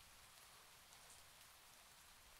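Near silence with a faint, steady hiss of rain.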